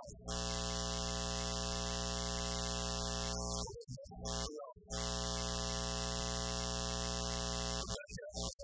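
A loud steady electrical buzz, rich in overtones with hiss above it, covers the audio and drowns out the preacher's voice. It drops out briefly at the start and for over a second about four seconds in, where faint fragments of his voice come through.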